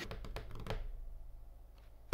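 A few faint, light taps in the first moment, then quiet room tone with a steady low hum.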